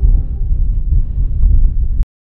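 Strong wind buffeting the microphone: a loud, gusty low rumble that cuts off suddenly at the end.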